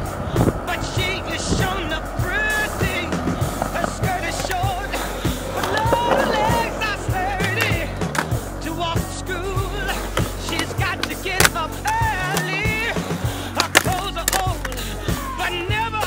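A song with singing plays over skateboard sounds: wheels rolling on concrete and repeated sharp clacks of the board on tricks and grinds.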